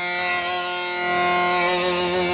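Electric guitar through the JTH Typhon fuzz pedal, set to its germanium clipping diodes, sustaining one held fuzzed note that fades slowly.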